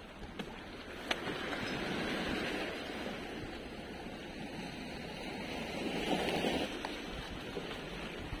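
Small sea waves washing over shoreline rocks, swelling and easing twice, with some wind on the microphone.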